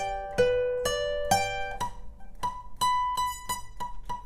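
Steel-string acoustic guitar played one note at a time with a pick: a slow arpeggio of about two to three notes a second across the strings of a held chord, with a higher note struck repeatedly in the second half.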